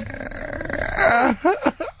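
A man groaning and grunting in strain as his stiff ankle is worked in slow circles during a Rolfing session: a rough, drawn-out groan, then short broken vocal sounds in the second half.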